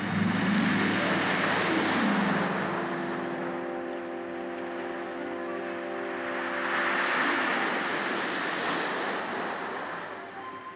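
Sea surf surging and washing against rocks, swelling loudest at the start and again about seven seconds in. An orchestral film score plays over it, with sliding notes early on and a chord held through the middle.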